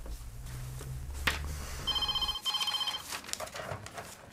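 Telephone ringing: two short electronic rings in quick succession, about two seconds in.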